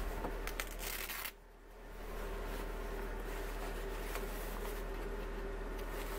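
Fabric of a winter jacket's sleeve rustling as hands work and tighten its cuff, with a short rasp about a second in.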